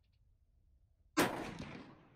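A single rifle shot, about a second in: a sharp crack followed by an echo that dies away over about a second. It is the test shot fired with the scope's elevation turret dialed up 30 MOA.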